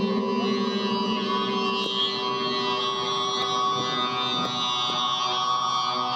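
Live music over a festival PA: a sustained droning texture of several steady held tones with no beat.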